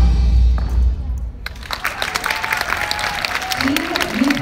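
Routine music played over the hall's loudspeakers ends about a second in, followed by audience applause, with a few voices calling out near the end.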